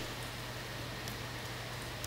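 Room tone of a lecture hall: a steady hiss with a low, constant hum underneath and no distinct events.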